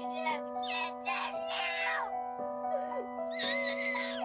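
A young girl crying and wailing in distress, a series of cries that rise and fall with a long high wail near the end, from intense itching, a side effect of the antibiotic rifampicin. Background music with sustained held tones plays under it.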